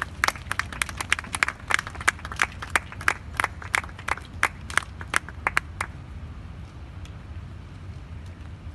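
A run of sharp claps, about three a second and slightly uneven, that stop about six seconds in, over a low steady rumble.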